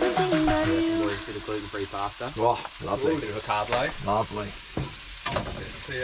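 Chicken sizzling in a frying pan on a gas hob, a steady crackling hiss, with music playing over it.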